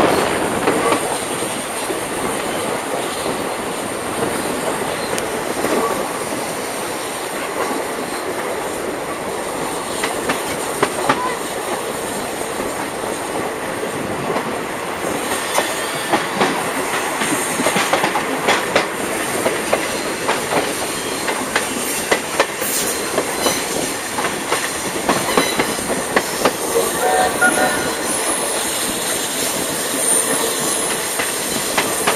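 Steam-hauled passenger train running, heard from beside an open coach window: a steady rush of wheel, rail and wind noise with clickety-clack from the wheels. The clicks come thick and sharp through the second half.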